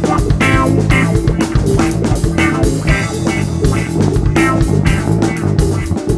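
Live funk-rock trio playing an instrumental passage without vocals: electric guitar, electric bass guitar and drum kit keeping a steady beat.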